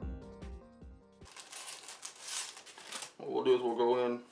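Background music fading out in the first second, then a couple of seconds of rustling, crinkling handling noise, and a short burst of voice near the end.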